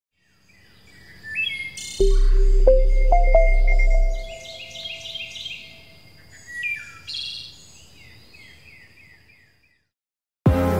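Birdsong sound effect under an animated logo: many chirps and trills that fade out near the end. About two seconds in, a short jingle is the loudest part: a deep low tone under three or four ringing notes that step upward, dying away by about four seconds.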